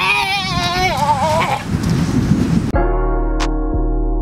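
A person's long, wavering, bleat-like wail over outdoor background noise, followed about two-thirds of the way in by background music with sustained electric-piano chords that cuts in abruptly.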